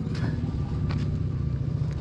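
A steady low rumble with no speech, at an even level.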